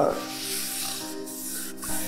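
Paper rustling steadily as a voting ballot is handled and folded by hand, over soft background music with held notes.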